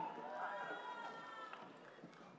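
Faint voices talking, fading away in the second half.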